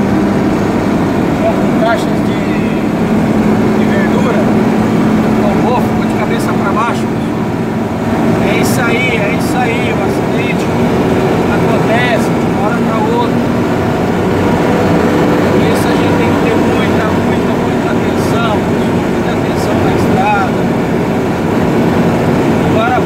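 Engine and road noise of a moving vehicle heard from inside its cab: a steady, loud low drone while driving on a wet highway, with voices chattering faintly underneath.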